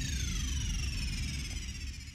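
Electronic time-up sound effect: a cluster of tones sweeping steadily downward in pitch over a low rumble, slowly fading out, marking the end of a freestyle round.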